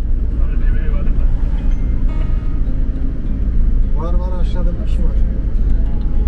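A local minibus's engine and road noise heard from inside the cabin while driving: a loud, steady low rumble. A voice is briefly heard about four seconds in.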